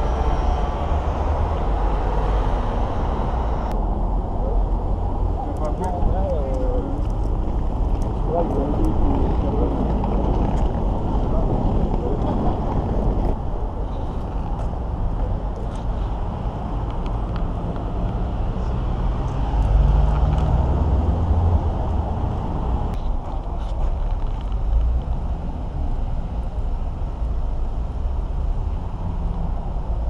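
Street ambience: steady road traffic rumble with people's voices here and there.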